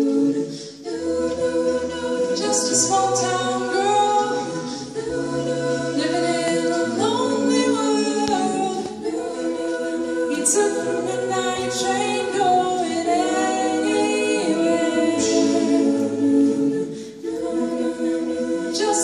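An a cappella vocal ensemble singing unaccompanied in several-part harmony, with short breaks between phrases about a second in and near the end.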